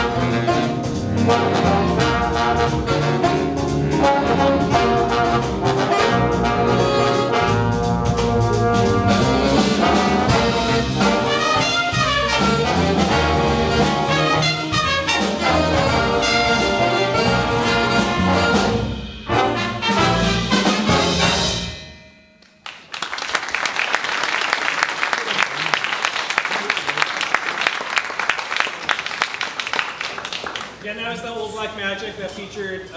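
High school jazz big band, with saxophones, trumpets, trombones and rhythm section, playing the close of a tune; after a brief break about 19 seconds in, the band ends about 22 seconds in. The audience then applauds.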